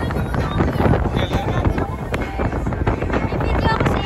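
Steady wind buffeting the microphone aboard a moving speedboat, over the rush of the boat's motor and water.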